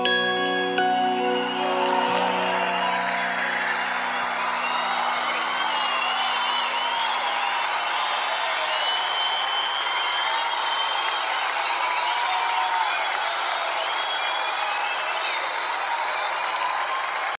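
The final chord of a live band performance dies away over the first few seconds. A concert audience then applauds and cheers, with scattered whistles.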